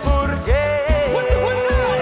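A band playing a romantic song: a long held melody note over a steady bass and drum beat.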